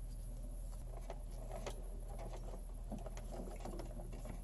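Faint scratching and small clicks of stiff electrical wires being handled and an orange plastic wire nut being twisted onto their ends, over a steady low hum.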